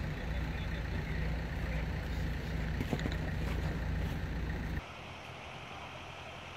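An engine idling steadily: a low hum that cuts off abruptly near the end, leaving a quieter outdoor background.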